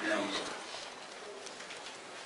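A brief, low voiced murmur just after the start, then faint room noise.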